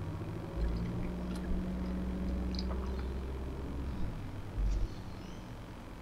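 Car driving along a street, heard from inside the cabin: a steady low engine and road hum that eases off after about four seconds.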